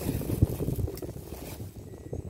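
Wind buffeting the microphone: an irregular low rumble, with a brief thump about half a second in.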